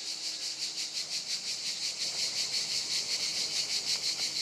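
Crickets chirping: a rapid, even, high-pitched pulsing trill.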